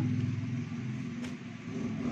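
A steady low hum runs underneath while fabric is handled, with one short crackle, like plastic wrapping, a little over a second in.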